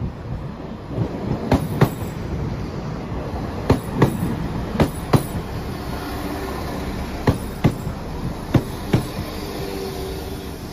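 Five-car Class 172 Turbostar diesel multiple unit pulling in alongside the platform: a steady low rumble with sharp clicks in close pairs as each bogie's wheels cross a rail joint, about five pairs in all. A faint steady whine joins in the second half.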